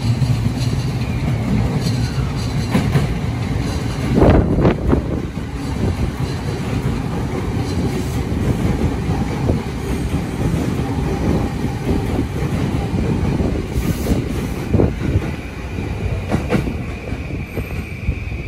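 JR East 209 series 2200 electric train (the B.B.BASE set) running past along the platform, with continuous wheel-and-rail running noise. Sharp clacks of the wheels over rail joints come about four seconds in and again a couple of times later, and a thin high squeal rises near the end.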